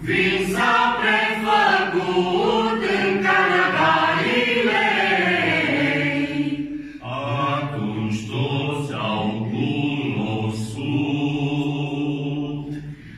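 A mixed group of men and women singing a Romanian Christmas carol (colindă) together, with a short break about seven seconds in before the singing carries on in a lower register.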